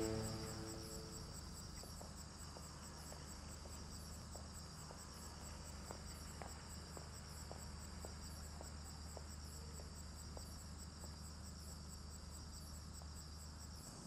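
Crickets chirping steadily and faintly, a continuous high pulsing, over a low steady hum. A run of faint, evenly spaced taps comes in the middle, and a music cue fades out in the first second.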